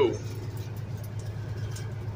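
Big-rig diesel engine running with a steady low drone heard inside the cab, the truck creeping along at about four miles an hour in traffic.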